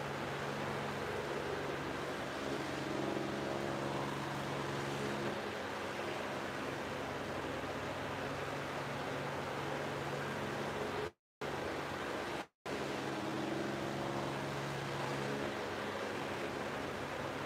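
Steady background hiss with a low hum, the even noise of a running fan or ventilation. The sound cuts out completely twice for a moment, about three-quarters of the way through.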